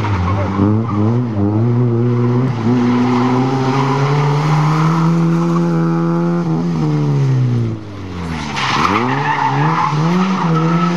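Fiat Cinquecento rally car's engine revving hard, its pitch sweeping up and down in the first seconds, held high for a few seconds, then falling away. Near the end the tyres squeal briefly as the revs climb again.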